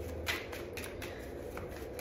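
A tarot deck being shuffled by hand, the cards flicking and slapping softly against each other in a few separate strokes.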